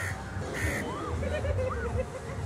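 Crows cawing, a few short calls, over a low steady background rumble.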